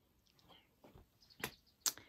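Quiet room with two short, sharp clicks about a second and a half and nearly two seconds in, with a few fainter small sounds before them.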